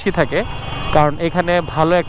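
A man talking steadily, with a short pause just before the middle, over motorcycle riding and traffic noise.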